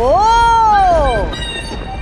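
A man's long drawn-out vocal cry, one call that rises quickly in pitch and then slides slowly down, lasting about a second and a half.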